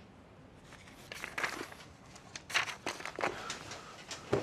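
Rustling of clothing and paper, shuffling footsteps and a few sharp knocks as people grapple at close quarters in a sudden scuffle. The loudest knock comes about two and a half seconds in.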